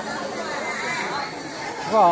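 Background chatter of several people talking at once, with the echo of a large indoor hall.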